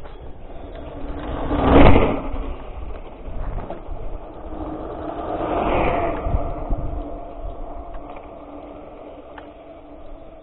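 Wind buffeting the microphone of a camera set on the ground, in two gusts: a louder one about two seconds in and a softer one around six seconds.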